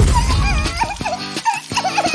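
A cartoon character's high-pitched crying: short wavering sobs and whimpers, one after another, over background music.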